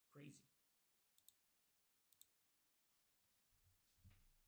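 Faint computer mouse clicks: two quick double clicks about a second apart, after a brief soft breath-like sound at the start, over near silence.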